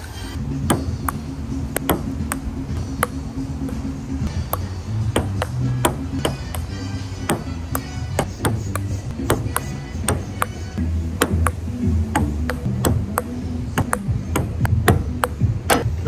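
Table tennis ball clicking off paddles and an outdoor table in a rally, sharp irregular hits one to three a second. Background music with steady low notes plays underneath.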